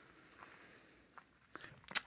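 A few faint, short crunches and rustles as a bunch of mint sprigs is pushed into crushed ice in a ceramic tiki mug.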